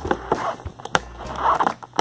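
Clear plastic toy box being handled and pried open by hand: a string of sharp clicks and short crackles from the stiff plastic.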